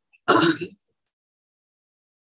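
A man clearing his throat once, a short burst of about half a second, heard over a video-call connection.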